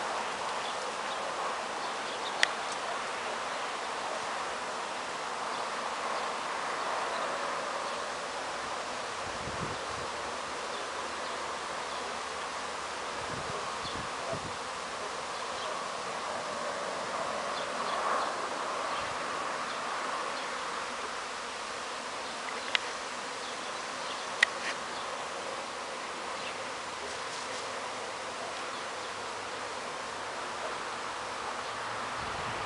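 A swarm of honeybees buzzing in a steady dense hum as the swarm is being taken down from a tree branch. A few sharp clicks sound over it, about two seconds in and twice a little after twenty seconds.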